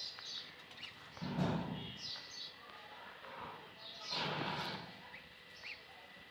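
Goslings peeping faintly while an adult goose hisses twice, once about a second in and again about four seconds in. The hissing is the goose's angry warning at being approached near its brood.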